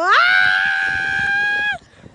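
A person's high-pitched shriek that sweeps up and is held steady for about a second and a half, then stops abruptly.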